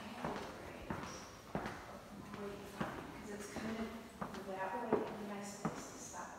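Footsteps on a tile floor, a steady walking pace of about one and a half steps a second, each step a sharp tap.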